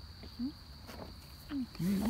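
A steady high insect trill, typical of crickets, over faint outdoor rumble. Two short low hums come in the middle, and a woman's voice starts near the end.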